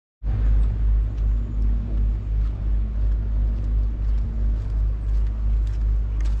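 Wind buffeting the camera microphone outdoors: a steady low rumble that swells and dips about twice a second.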